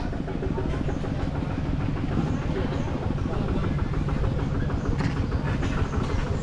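A motor running steadily with a fast, even low chugging.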